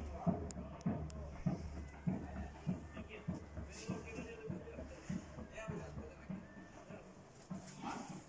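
An animal calling repeatedly in short, evenly spaced calls, a little under two a second, over a low steady hum that fades out about six seconds in.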